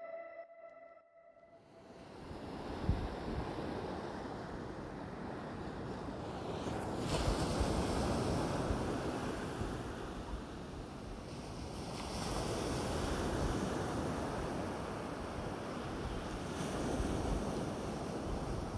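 Ocean waves breaking on a beach: a steady surf wash that fades in about two seconds in and swells louder twice as waves come in.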